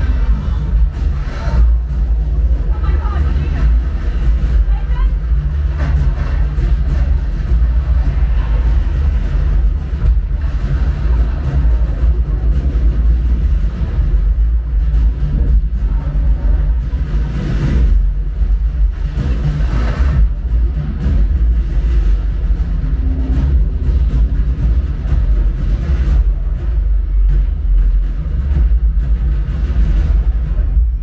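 A film soundtrack played loud through a Sonos Arc soundbar and Sonos Sub home-theatre system, picked up by a microphone in the room: music and effects over a constant, heavy deep bass.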